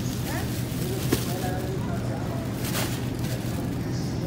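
Supermarket background: a steady low hum with distant, indistinct voices, and a couple of faint knocks about a second in and near the three-second mark.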